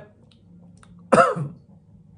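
A man clears his throat once, about a second in: a short, loud vocal sound that falls in pitch.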